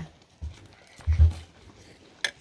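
Dull, low thumps, a small one about half a second in and a louder one about a second in, with quiet room sound between.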